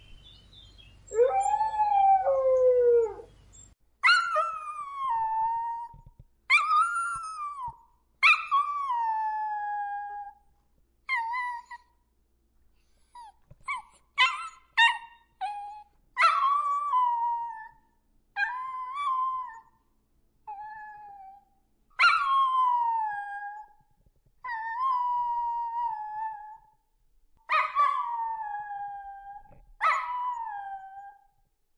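Dogs howling: one long falling howl about a second in, then a string of shorter howls, each breaking in high and sliding down, with a quick run of short yips around the middle.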